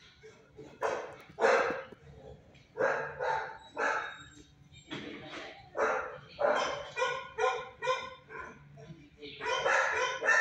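A dog barking repeatedly, about a dozen short barks in irregular groups, starting about a second in.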